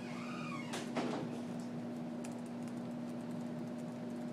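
Quiet classroom room tone with a steady low hum; a short squeak and then a knock about a second in, followed by faint ticks.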